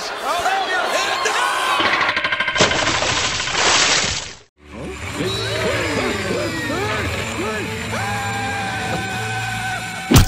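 Shouting and screaming voices. A few seconds in, a burst of rapid clatter runs into a loud rush of noise that stops abruptly. After that, more excited shouting and yelling from several people.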